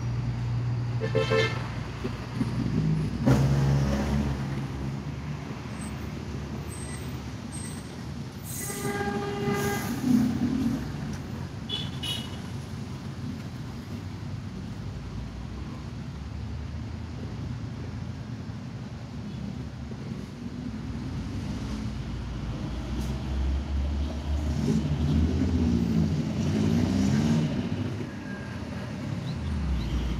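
Road traffic in a jam: vehicle engines running as a steady low rumble, with vehicle horns honking several times, the loudest blast about ten seconds in.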